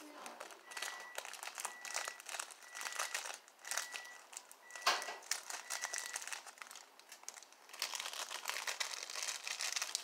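Clear plastic bag crinkling as it is handled and opened, with a sharp crackle about five seconds in and a busier stretch of crinkling near the end. A faint short beep repeats about once a second through the first six seconds.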